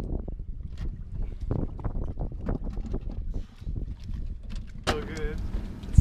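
Wind buffeting the microphone, with scattered light knocks and clunks as a heavy Yamaha outboard motor is lowered on a rope and fitted to a small inflatable boat's transom. A voice starts near the end.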